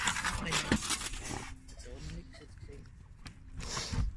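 Clattering and rustling as a clear plastic panel and its chain are handled, busiest for about the first second and a half. After that it is quieter, with a dog panting.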